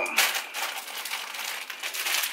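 Plastic wrapper of a multipack bag of Kit Kats crinkling continuously as it is handled.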